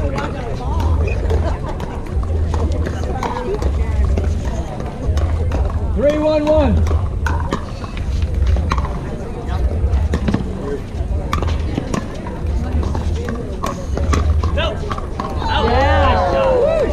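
Pickleball doubles rally: sharp pops of paddles striking the plastic ball, with a player's short held call about six seconds in and several voices near the end. Under it runs a low rumble that swells and fades about once a second.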